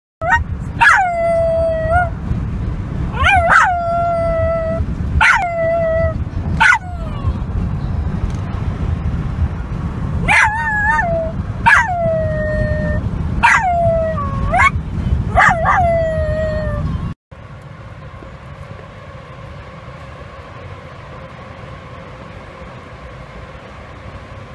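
A Bichon Frise howling inside a car, about nine short howls that each drop sharply in pitch and then hold, over a steady low rumble. The howling stops abruptly about 17 seconds in, leaving a much quieter steady background.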